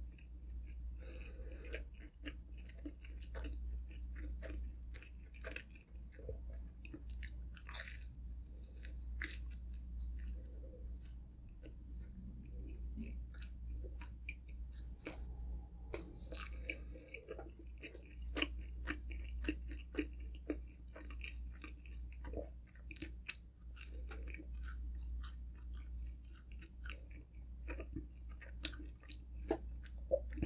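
Close-miked chewing of pepperoni pizza with extra cheese, with many short clicks and crunches of bites scattered throughout.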